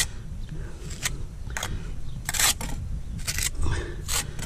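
Steel pointing trowel scraping and cutting lime mortar on a brick trowel: several short metal-on-mortar scrapes about a second apart.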